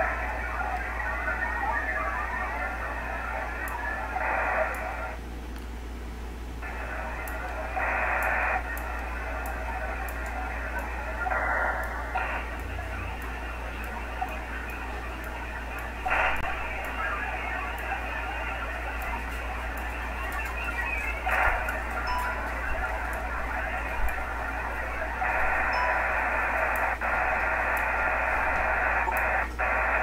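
HF radio receiver audio in single sideband carrying a VARA HF modem data session: dense, hissy data tones that change in blocks every few seconds, over a steady low hum. The connection is very weak and noisy, with a poor signal-to-noise ratio.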